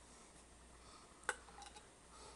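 Quiet room with one sharp light tap about a second in, followed by a few faint ticks, from hands handling a taped cardboard box.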